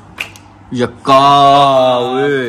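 A sharp snap, then a man's loud drawn-out vocal call held at one pitch for over a second, dipping in pitch near the end.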